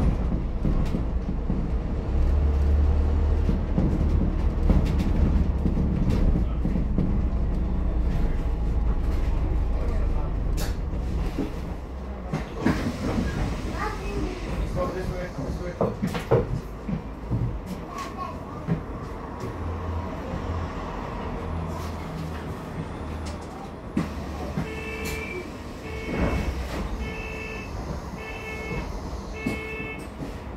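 Interior of an ADL Enviro400H MMC hybrid double-decker bus with a BAE hybrid drive: the drivetrain runs with a heavy low rumble for the first half, then quietens as the bus slows, with knocks and rattles from the body. Near the end a warning beep repeats about once a second.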